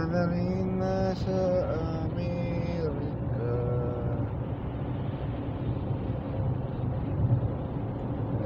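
Steady road and engine rumble inside a car cruising on a freeway. A voice sounds over roughly the first half, without clear words.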